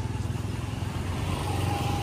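Motorcycle engine running steadily with an even low pulse, and a faint thin tone in the last half second.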